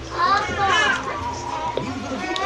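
High-pitched children's voices, loudest in the first second, over a steady low hum.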